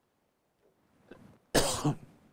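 A man coughs about one and a half seconds in, a short cough in two quick bursts.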